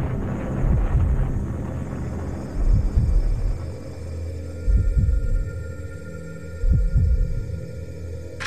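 Dramatic documentary score: a slow, heartbeat-like double thump about every two seconds over a low steady drone, with faint high held tones coming in partway through.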